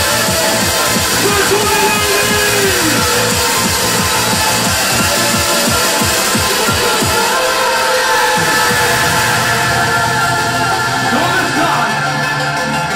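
Hardcore rave music played loud from a DJ set over a PA, a fast kick drum driving under synths. About eight seconds in the kick drops out, leaving held bass and synth tones.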